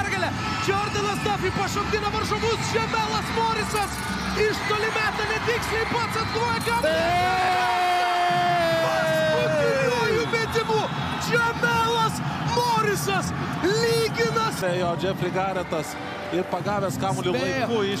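An excited commentator shouting over a cheering arena crowd, right after a clutch three-pointer goes in. About seven seconds in there is one long held yell lasting some three seconds.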